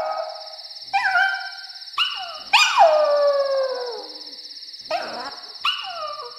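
A dog howling: a string of howls, each starting high and sliding down in pitch, over a steady high tone.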